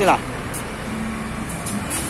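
Steady roadside traffic noise from passing vehicles, with a man's voice ending a word at the very start.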